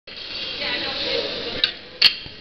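Metal pans and utensils at a gas-burner omelette station, with two sharp clinks, one about one and a half seconds in and one at the end, over background voices.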